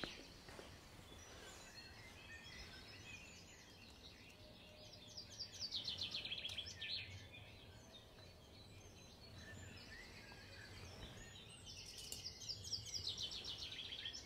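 Small birds twittering faintly in quick trills that fall in pitch, in a bout about five seconds in and again near the end, over a steady low background rumble.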